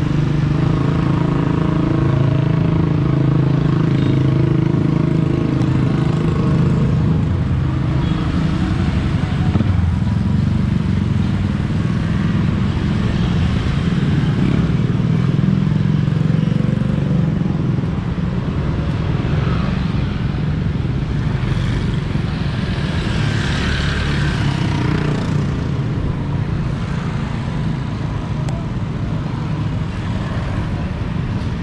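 Motor scooter traffic passing on a busy street: a steady mix of small engines running and tyre noise. One engine drone stands out close by for the first several seconds.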